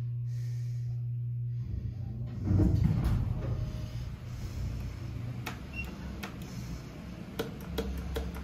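Steady low hum of an Otis hydraulic elevator's machinery that cuts off about a second and a half in. A loud rumbling clatter follows, then several sharp clicks of the cab's push buttons being pressed near the end.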